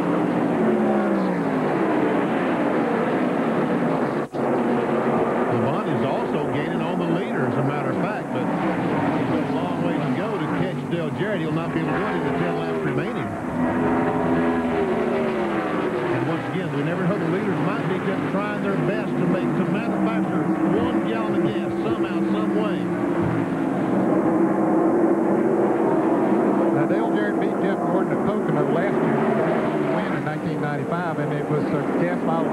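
NASCAR Winston Cup stock cars' V8 engines at full throttle as a pack races past, their pitch falling as each car goes by, heard through TV broadcast track audio. A sharp click with a brief dropout comes about four seconds in.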